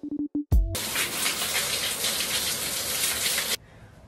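A shower running, its spray hissing steadily onto hair and a tiled floor, and then cutting off suddenly near the end. It is preceded by a moment of electronic music with drum hits.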